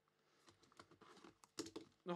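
Small clicks and crackles of cellophane shrink wrap being slit and pulled from a sealed trading card box. Faint at first, they begin about half a second in and get louder near the end.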